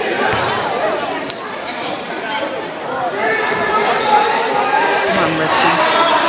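A basketball being dribbled on a hardwood gym court, with spectators' voices and shouts echoing through the gymnasium.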